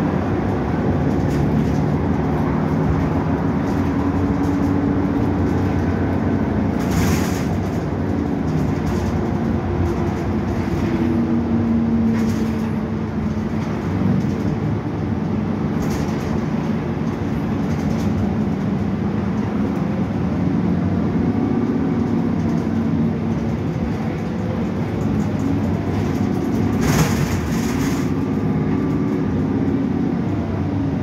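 Interior ride noise of a 2015 Gillig 29-foot hybrid bus under way: the steady drone of its Cummins ISB6.7 diesel and Allison hybrid drivetrain, with pitch that drifts up and down as it changes speed. A few short clatters cut in, about a quarter of the way in, around halfway and near the end.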